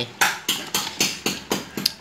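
Rapid, regular sharp knocks, about four a second, each a short hard hit with a brief ring.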